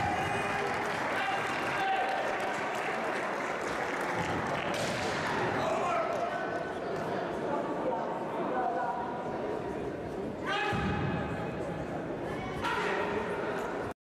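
Kendo fencing in a large echoing hall: long drawn-out kiai shouts and calls, two of them held near the end, over sharp knocks from bamboo shinai and feet striking the wooden floor.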